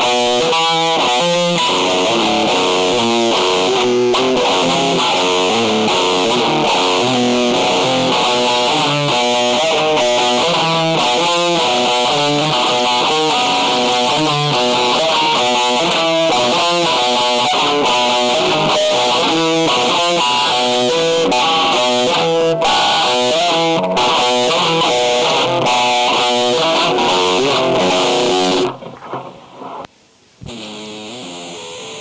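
Distorted electric guitar music, a busy line of quickly changing notes at a steady loud level, that cuts off suddenly about a second before the end.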